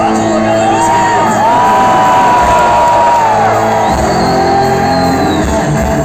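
Live rock band performance: guitars, bass and drums playing loudly under a vocalist's long, held notes that slide in pitch, with shouting.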